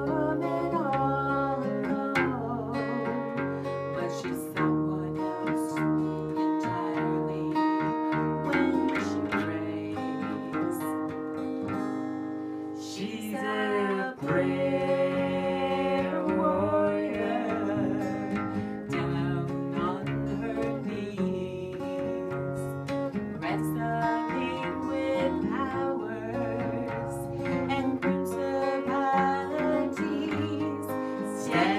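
Two acoustic guitars playing a slow song while a woman sings lead into a microphone.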